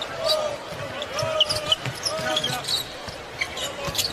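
Basketball game sounds on an arena court: a ball being dribbled on the hardwood with short sneaker squeaks, over crowd murmur and faint voices.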